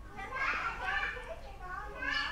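Children's voices, talking and calling in the background. The voices are loudest in the first second and a half, then pause briefly before starting again at the very end.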